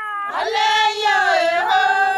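A high-pitched singing voice holding long notes that waver and bend slowly in pitch, swelling in about a third of a second in.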